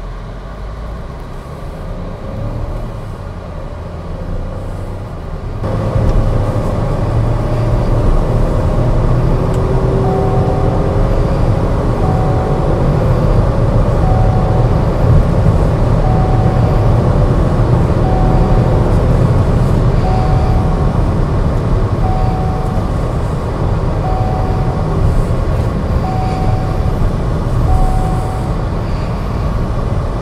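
Engine and road noise of an MG Astor heard inside its cabin while driven hard, jumping louder about six seconds in as the engine pitch climbs. A short chime from the car beeps about every two seconds through the second half.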